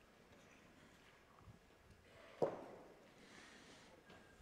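A metal pétanque boule landing on the gravel terrain with a single sharp thud about two and a half seconds in, then rolling briefly on the grit to stop beside the jack.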